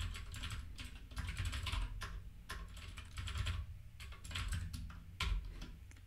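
Typing on a computer keyboard: quick runs of key clicks in bursts, with brief pauses between them.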